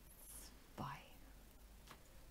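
Near silence with room tone, broken by one softly spoken word about a second in and a faint click near the end.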